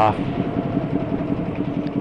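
Cruiser motorcycle engine running steadily as the bike cruises at low speed.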